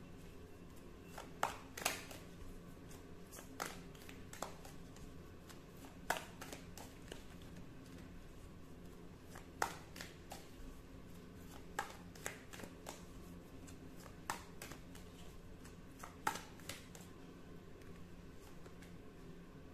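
Tarot cards being handled and shuffled, with irregular sharp clicks and snaps every second or two over a faint steady hum.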